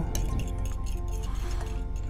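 Fork clinking against a glass bowl as eggs are beaten, over background music and a steady low hum.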